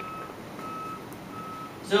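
Electronic beeping: a short, high single-pitched beep repeating at an even pace, three times in two seconds.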